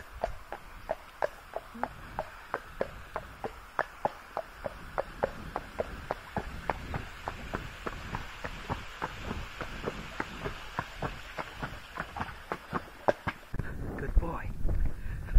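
Hooves of a ridden Arabian horse clopping steadily on a tarmac lane, about three to four strikes a second, over a faint steady hiss. The hoofbeats stop shortly before the end.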